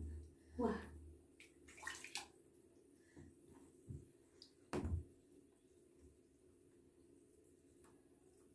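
Faint, muffled bathwater sounds picked up by a phone lying in a bath with a child in it: a few brief sloshes and bumps in the first couple of seconds and a sharp knock about five seconds in, then it goes quiet.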